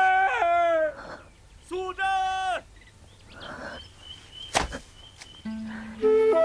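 Two long, drawn-out shouts of a woman's name by men, one at the start and one about two seconds in. Then a brief sharp sound about four and a half seconds in, and soft music with a low held note coming in near the end.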